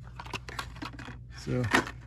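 Carded die-cast toy cars being handled on store pegs: a run of light, irregular plastic clicks and taps. Near the end a man says a single word.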